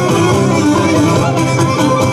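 Live Cretan folk dance music: a Cretan lyra plays the melody over steady strummed guitar and other plucked strings, keeping an even dance rhythm for a kastrinos.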